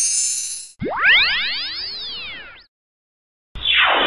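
Synthesized logo-animation sound effects. A high shimmering tail fades out, then about a second in comes a sudden swelling effect whose several pitches sweep upward and arc back down as it fades. After a brief silence, a short whoosh falls in pitch near the end.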